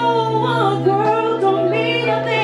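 A woman singing live into a handheld microphone over backing music, holding long notes with a slight waver in pitch.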